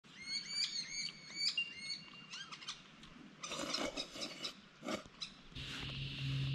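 Birds calling: a quick run of short, repeated chirps with bending notes, then a busier stretch of mixed calls. A low steady hum comes in near the end.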